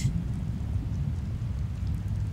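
Low, steady underwater rumble: ambient water noise picked up by a dive camera.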